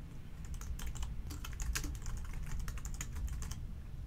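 Typing on a computer keyboard: a quick, uneven run of key clicks that stops about three and a half seconds in.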